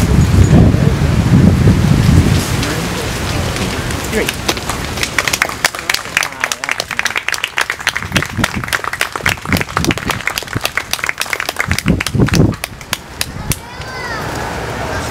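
A small group applauding: a dense patter of hand claps that starts about four seconds in and dies away just before the end. It follows a low rumble, the loudest sound in the first two seconds.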